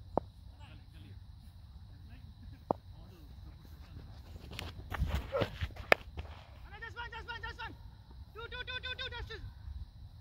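A cricket ball being bowled and struck: a few softer knocks, then one sharp, loud crack about six seconds in as the bat meets the ball. After it come two short bursts of a rapid, repeated high-pitched call.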